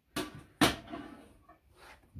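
Two sharp knocks about half a second apart, the second louder, each trailing off, then a short hiss near the end.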